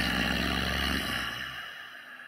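A sudden loud burst of dense droning noise with a deep rumble underneath, cutting in abruptly. The rumble drops away about a second and a half in, and the higher part fades out over the next couple of seconds.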